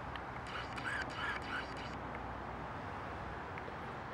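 Quiet outdoor background: a steady low rush, with a few faint rustles and clicks between about half a second and a second and a half in.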